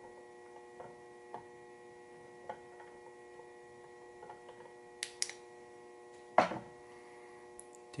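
Faint steady electrical hum made of several steady tones, broken by a few small clicks and a louder knock about six and a half seconds in, from handling at the bench.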